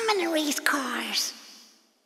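A voice making two short vocal sounds that each slide down in pitch, with no words the recogniser caught, then fading out to silence.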